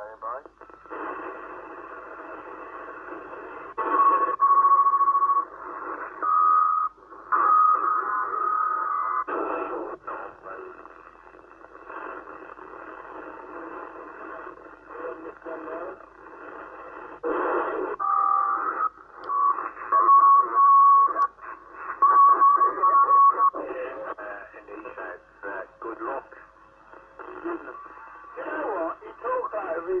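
Yaesu transceiver's speaker playing 27 MHz CB band reception in FM while it is tuned up through the channels. It gives static hiss and garbled bursts of distant voices, broken several times by steady whistle tones lasting a second or more. These are far-off stations coming in on a band that is wide open with propagation.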